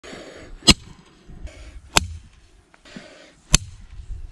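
Three sharp strikes of a Work Tuff Gear V44X bowie knife's K329 steel blade against a brick, about a second and a half apart, each with a brief metallic ring.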